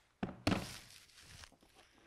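Two knocks about a quarter second apart as a handheld drone remote control is set down on a hard plastic carrying case, followed by a short, fading handling noise.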